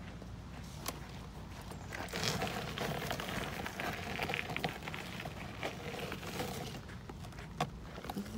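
Footsteps crunching on a gravel path, starting about two seconds in and going on in an irregular run, with a sharp click near the start and another near the end.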